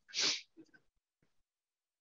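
A man's single short, sharp breath, a quick breathy huff about a third of a second long, right at the start.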